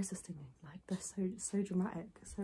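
A woman speaking quietly, almost whispering, in short broken phrases.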